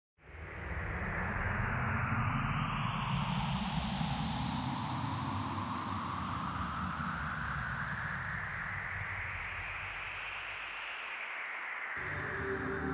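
A steady rushing, wind-like noise over a low rumble, its pitch sweeping slowly down and then back up. It starts suddenly.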